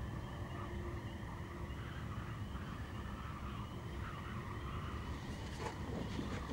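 Faint outdoor night ambience: a steady chorus of small repeated chirps over a low rumble, with a brief rustle near the end.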